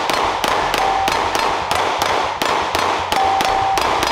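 A handgun fired in a fast, even string of about sixteen shots, roughly four a second, at steel targets, with a short ringing ping from steel hits about a second in and again near the end. The echoes trail off after the last shot.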